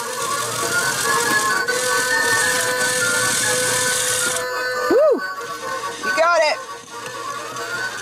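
A toy claw machine plays its electronic tune while a small motor whirs as the claw moves. The whirring stops after about four and a half seconds. A short hummed vocal sound comes about five seconds in, and another just after six seconds.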